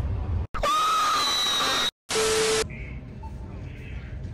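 Edited-in sound effects: a scream-like sound with a held high pitch lasting over a second, then after a short silent gap a half-second buzz on one steady low tone. Both start and stop abruptly. Faint store ambience follows.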